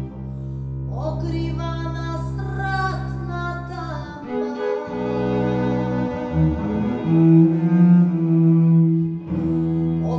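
Violin and double bass playing a Balkan tune: long, held bowed notes over a deep bass line, with a few sliding notes early on and a change of bass note about four seconds in.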